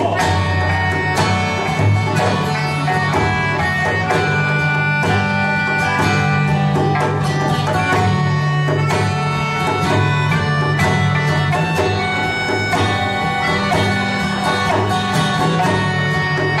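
Live acoustic band playing an upbeat tune: a melodica carries the melody in held notes over strummed acoustic guitar and other plucked strings.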